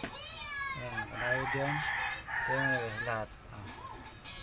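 A rooster crowing: one loud, harsh, several-part crow lasting about three seconds, falling at the start.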